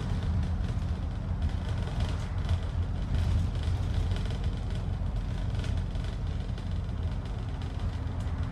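Double-decker bus heard from the upper deck while under way: the engine's steady low drone with road and cabin noise.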